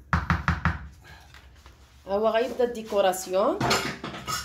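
A quick run of about five light knocks in the first second, as kitchenware is handled, then a voice for about a second and a half in the second half.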